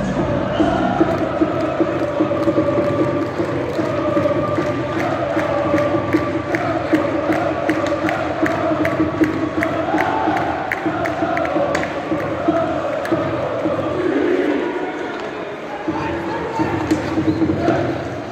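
Ice hockey arena crowd chanting in unison, with a steady rhythmic beat of about three a second through the first part.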